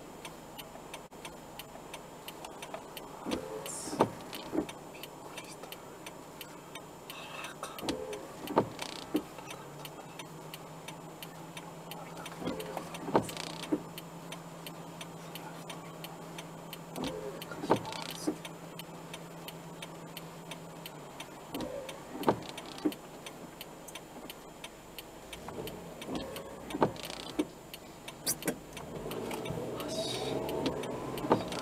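Inside a car waiting in traffic on a wet evening, a pair of short knocks repeats about every four and a half seconds, the rhythm of windscreen wipers on an intermittent setting sweeping and parking. A low steady hum joins in the middle for about ten seconds.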